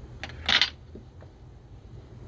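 A small metal part set down or dropped onto metal with a single sharp clink about half a second in, followed by a couple of faint clicks.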